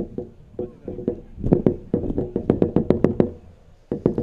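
A drum beaten in quick, uneven strokes, the same low notes on every stroke, the strokes coming thick and fast in the middle and stopping a little before the end.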